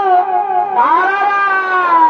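Shehnai playing the dance's melody: a held, wavering note that breaks off shortly in, then a new note that slides up just before a second in and is held.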